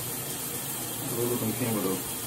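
Shower water spraying steadily, an even hiss in a small tiled shower stall. A quiet voice murmurs in the second half.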